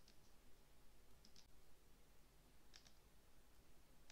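Near silence with faint, short clicks in pairs, about one pair every second and a half.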